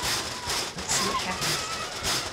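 Hand-held noisemakers shaken and beaten in a rough rhythm, about two strokes a second, with a faint voice underneath.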